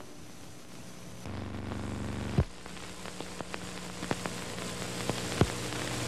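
Background noise of an old off-air videotape recording with no programme sound. A faint hiss gives way about a second in to a steady buzzing hum, and sharp clicks come near the middle and again near the end.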